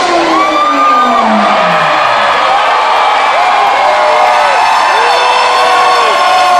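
Concert crowd cheering and whooping, many voices in overlapping rising-and-falling shouts. Under it, a single low tone slides down in pitch and dies away about two seconds in.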